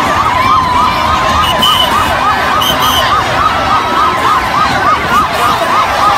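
A siren yelping: a high tone that sweeps up rapidly, about three times a second, over the steady din of a large crowd.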